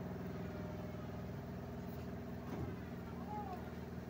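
Steady low mechanical hum made of several unchanging tones, from a machine running in the background.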